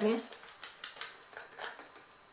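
Faint clicks and rustles of a plastic bottle of cleansing milk being handled and opened, with a brief sniff as it is smelled.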